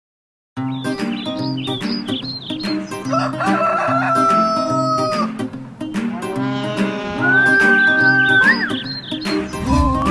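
Cartoon background music with a steady beat, and a rooster crowing over it: two long crows, about three and seven seconds in, the second rising at its end.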